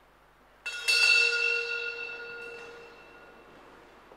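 Sacristy bell rung as the priest and servers enter the sanctuary, signalling the start of Mass. It strikes suddenly just under a second in, a cluster of clear, high ringing tones that dies away over about three seconds.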